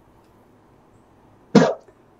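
Quiet room tone for most of the time, then near the end one short, sudden burst of a man's voice.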